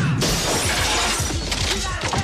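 Glass shattering and crashing in a film action sequence, a loud sudden smash followed by a dense rush of breaking noise, with music underneath.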